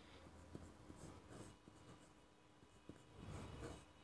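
A pen drawing on paper, very faint: a few light ticks and short scratches, with a brief run of scratching near the end.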